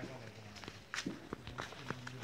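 Footsteps of people walking on a dirt forest footpath: a handful of soft, irregular steps over a faint steady low hum.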